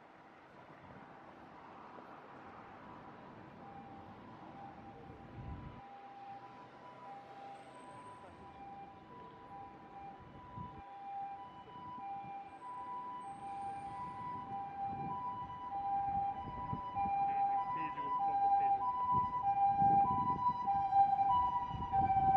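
Ambulance siren sounding its two-tone hi-lo call, the two notes alternating evenly, growing steadily louder as it approaches, over street traffic noise.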